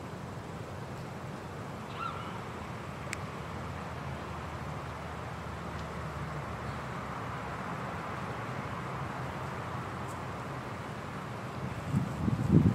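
Steady outdoor background noise with a low, fluctuating rumble of wind on the microphone. A faint short chirp comes about two seconds in, and a single sharp click about a second later.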